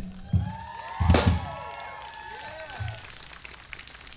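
Rock band ending a song: a last drum hit, then a loud cymbal crash with the drums about a second in, ringing out and fading.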